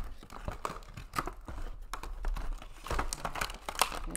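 Clear plastic packaging and a cardboard box crinkling and rustling as they are handled by hand: a run of irregular crackles and ticks.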